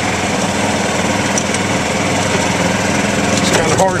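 Golf cart driving flat out at about 12 mph, a steady, even drone that holds without change.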